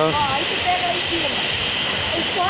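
Waterfall running steadily: a constant, even hiss of falling water.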